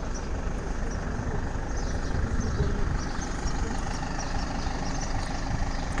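Steady low outdoor rumble with a faint hiss above it and no distinct events.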